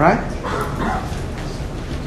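A man's voice saying "right?" with a sharply rising pitch, followed by steady background noise of the recording.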